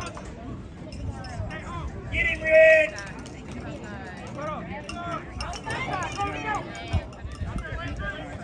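Spectators' voices talking and calling out on a football sideline, with one loud, high-pitched shout about two and a half seconds in.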